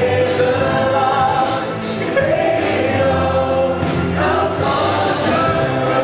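Live worship band playing a song: several voices singing together in long held notes over acoustic guitar, drums and keyboard.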